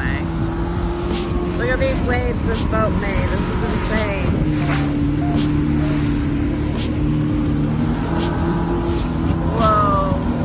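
A motorboat engine running at a steady pitch that drops a step about four and a half seconds in, under a heavy low rumble of wind and water on the open lake.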